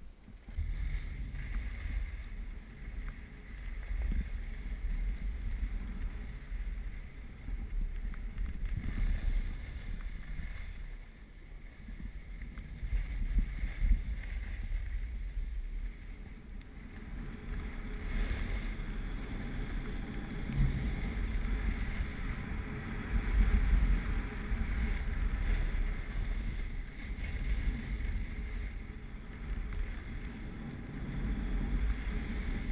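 Wind buffeting the microphone of a camera carried by a skier moving downhill, with the hiss of skis sliding and scraping over packed snow. The noise swells and eases unevenly as speed and turns change.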